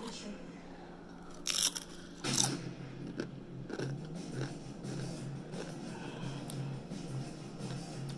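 Crunchy Doritos tortilla chips bitten and chewed: two loud crunches about one and a half and two and a half seconds in, then softer chewing. Low, pulsing background music runs underneath from a little after two seconds in.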